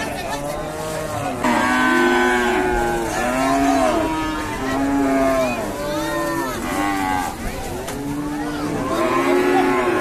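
A herd of cows and bulls mooing, many drawn-out calls overlapping one another, several at a time.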